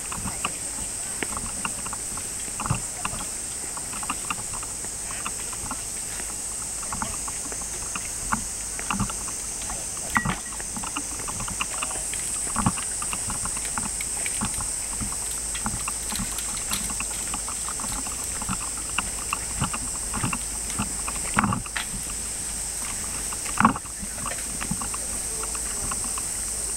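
Outdoor night ambience: a steady high-pitched hiss with scattered short knocks and clatter, the sharpest knock near the end.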